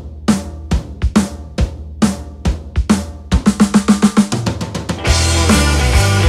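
Rock drum kit playing an intro beat of kick, snare and cymbal strikes. About three seconds in it breaks into a fast drum fill, and about five seconds in the full band comes in with the drums.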